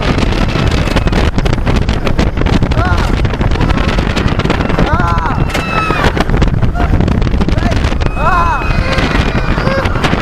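Wind buffeting the microphone and the rumble of a hybrid wooden-steel roller coaster train running fast along its steel rails. Riders scream several times, about three, five and eight seconds in.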